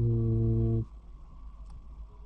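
A man's voice holding a steady, level hum for just under a second, a hesitation sound while he thinks.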